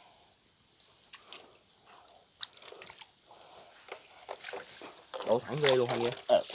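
Wet mesh fish net being handled in shallow water, with scattered small clicks, crackles and light splashes as the net and the small fish caught in it move. A person's voice is heard briefly near the end.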